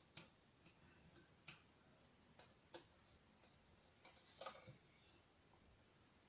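Near silence with a few faint, scattered ticks and scratches of a pen writing on a card; the loudest cluster comes about four and a half seconds in.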